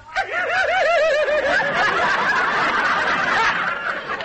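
Live studio audience laughing. A single rhythmic ha-ha-ha stands out at first, then the laughter spreads into a broad wave from the crowd that eases off near the end.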